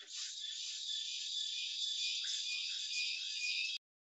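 Steady high-pitched hiss with faint steady whistling tones running through it, cutting off abruptly near the end, as on an open video-call microphone.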